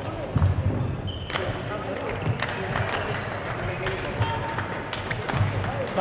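Badminton hall sounds: scattered sharp hits of rackets on shuttlecocks and short squeaks of shoes on the court mats, over indistinct voices.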